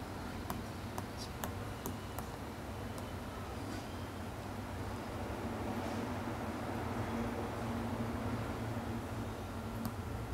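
Hard-tipped Surface Pen stylus tapping and stroking across a tablet's glass screen: faint light ticks, most of them in the first few seconds, over a steady low room hum.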